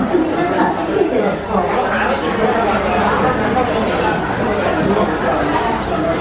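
Several people talking at once: steady indoor restaurant chatter, with no single voice standing out.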